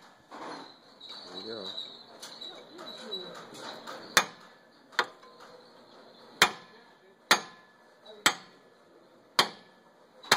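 Hammer striking a steel steering knuckle six times, about a second apart, starting a few seconds in, to shock the ball-joint tapers loose from the knuckle.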